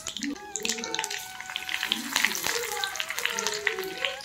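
Mustard seeds and fresh curry leaves crackling and sizzling in hot oil in a cast-iron kadai, with many small sharp pops.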